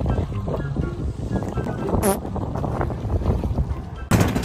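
Outrigger boat under way, its engine running as a steady low rumble with wind on the microphone, under background music and voices. A brief rising whistle sounds about two seconds in.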